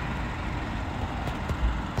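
Steady background rumble and hiss, with a few faint clicks and a low thump in the second half.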